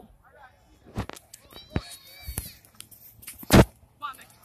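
Several sharp knocks, the loudest near the end, with faint distant shouting between them.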